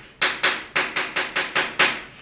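Chalk writing on a blackboard: a quick run of sharp taps and short scratches, about nine strokes in two seconds, as kanji characters are written.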